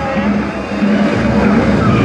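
Ice hockey skates scraping and carving on the rink ice, over a steady arena din.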